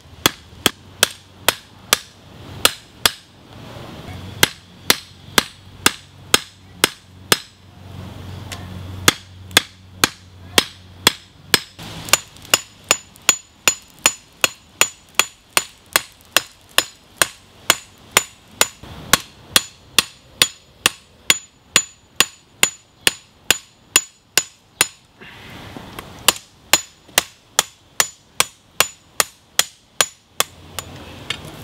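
Hand hammer striking a red-hot leaf-spring steel blade on a steel block anvil while forging the edge bevels: steady blows about two a second, broken by a few short pauses. Through the middle stretch each blow has a high ring.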